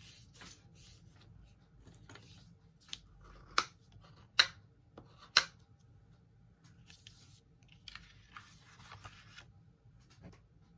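A folded white cardstock card base being handled on a craft mat: four sharp paper snaps or taps between about three and five and a half seconds in, then soft rustling as the card is slid and opened out.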